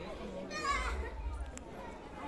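Background voices of people on the temple grounds, with one high-pitched voice calling out about half a second in, under a steady low rumble.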